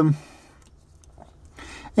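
The tail of a man's drawn-out, falling "eh" of hesitation, then a pause of faint room tone with a soft intake of breath near the end, just before he speaks again.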